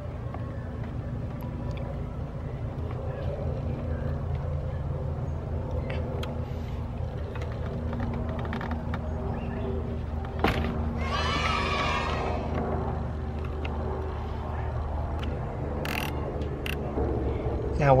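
Occasional light metallic clicks of a small wrench working a car battery terminal nut, over a steady low hum. About ten seconds in, a high wavering cry lasts about two seconds and is the loudest sound.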